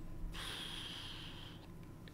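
A man's single breath: a soft hiss lasting about a second.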